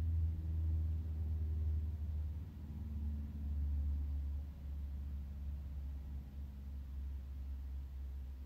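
A steady low hum, with faint held tones above it that waver slightly.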